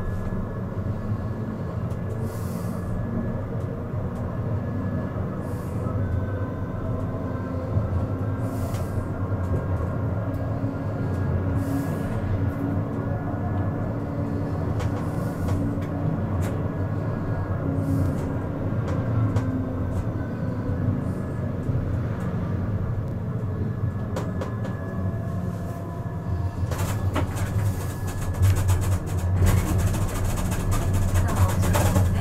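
Siemens Avenio low-floor tram running on street track: a steady rumble of wheels on rail, with a whine from the electric traction drive that drifts up and down in pitch. A burst of clicking and rattle comes near the end.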